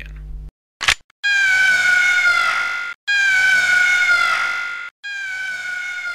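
A short click, then three long, high-pitched screams in a row, each about two seconds long and sliding down in pitch at the end, a cartoon falling-scream effect.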